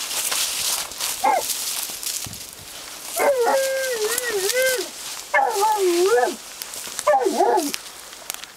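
West Siberian Laika whining and howling in four drawn-out calls that waver up and down in pitch; the longest lasts about a second and a half. A crackling rustle comes before them in the first few seconds.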